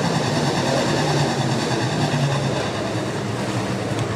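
A pack of USRA stock cars' V8 engines running at racing speed, several engines droning together steadily.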